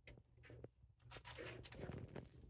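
Faint rustling and light scratching as a kitten moves about on a fabric mat, getting busier from about a second in.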